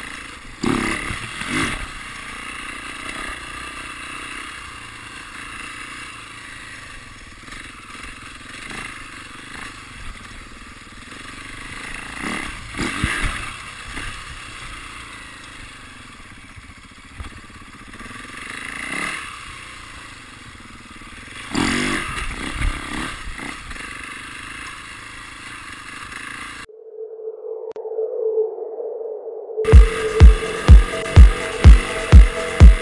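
Enduro dirt bike engine running under the rider's onboard camera, rising and falling with the throttle, with a few louder surges. Near the end it cuts to a short electronic tone, then loud electronic music beats begin.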